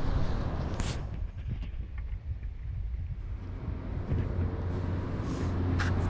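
Wind rumbling on the microphone, a steady low buffeting, with a short rustle or knock about a second in.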